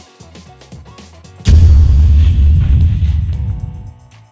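Background music with a light beat. About a second and a half in, a loud, deep boom sound effect hits and dies away over about two seconds.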